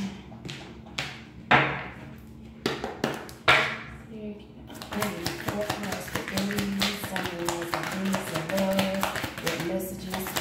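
A tarot deck handled and shuffled: a few sharp taps of the cards in the first four seconds, then a continuous rapid flutter of cards being shuffled in the hands from about five seconds on.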